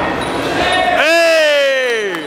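A long shout from one person, starting about a second in and sliding slowly down in pitch as it is held, over a hall full of chatter.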